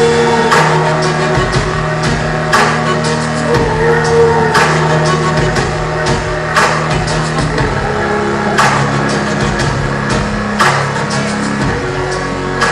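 Dance music played loud, with a steady held bass and a beat: a strong hit about every two seconds, lighter ones between.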